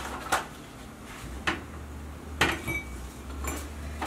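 A few light clinks and knocks of a glass cookie jar and cookies being handled, about four sharp ones spread over the few seconds, over a low steady hum.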